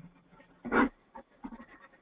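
A person's voice over a telephone-quality conference line: one short vocal sound, like a brief "eh" or "mm", about three-quarters of a second in, with a few faint mouth or line noises around it.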